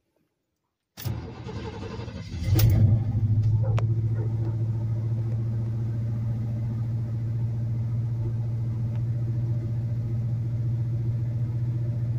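A 1978 Chevrolet C10 pickup's engine cold-starting, heard from inside the cab. The starter cranks for about a second and a half, the engine catches with a surge, and it settles into a steady fast idle near 1,700 rpm.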